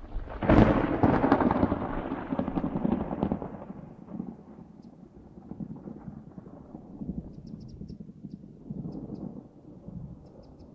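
Thunderclap: a sudden loud crack about half a second in, then a rumble that fades over a few seconds and keeps rolling quietly, swelling again twice.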